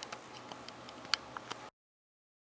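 Faint room noise with about eight small, scattered clicks and ticks, the loudest a little past halfway. The sound cuts off abruptly to dead silence near the end.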